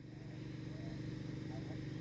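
A steady, low mechanical hum, like an engine running, fades in over the first half second and then holds evenly under faint background hiss.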